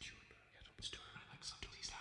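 Faint whispering by a computer-processed male voice: short breathy, hissing fragments.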